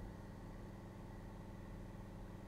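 Faint steady low hum with no other events: background room tone.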